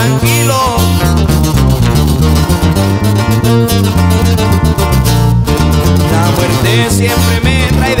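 Acoustic guitars and an electric bass guitar playing an instrumental passage live, with plucked guitar lines over a moving bass line; a singing voice comes in right at the end.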